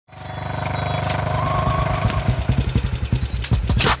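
Motorcycle engine running as the bike comes closer, its beat slowing as it rolls to a stop, with a short hiss near the end.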